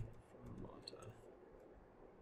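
Faint keystrokes on a computer keyboard: a few light, separate clicks in the first second and a half as a word is typed, then low room tone.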